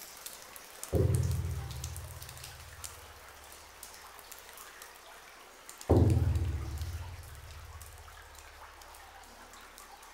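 Two deep booming hits in the soundtrack, about five seconds apart, each starting suddenly and dying away over a couple of seconds, over a faint steady crackle.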